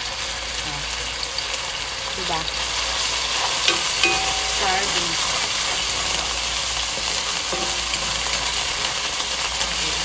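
Canned sardines in tomato sauce sizzling in a hot wok with browned garlic and onion, a spatula stirring and scraping them against the pan: the fish is being sautéed before water goes in.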